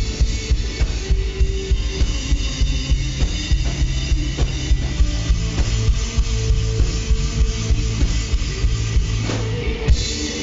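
Rock band playing live: a drum kit pounding out a fast, steady beat under bass and electric guitars, loud throughout.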